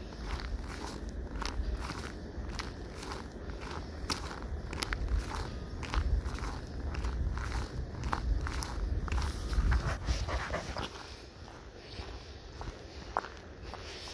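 Footsteps on a packed snowy path, a steady walking pace of about two steps a second, with a low rumble underneath that eases near the end.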